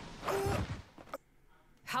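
A person's short, breathy sigh, then a brief quiet gap before speech starts near the end.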